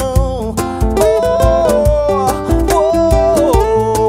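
Acoustic trio music: steel-string acoustic guitar and seven-string guitar strumming and picking over a steady cajón beat, with a wordless, wavering sung melody line carried over the guitars.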